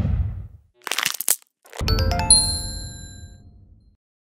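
Animated end-screen sound effects: a deep whoosh dying away, a short burst of sharp clicks about a second in, then a bright chime with bell-like ringing tones, struck twice around the two-second mark and fading out.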